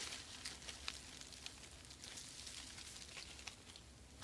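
Faint rustling and crackling of dry leaf litter, with scattered soft clicks.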